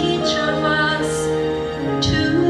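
A woman singing a slow, tender song through a handheld microphone in long held notes, over a steady instrumental accompaniment.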